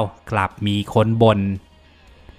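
A man's voice speaking Thai narration for about a second and a half, then faint background music.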